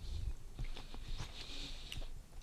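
Soft gummy lolly being chewed close to a headset microphone: faint, irregular wet mouth clicks and smacks.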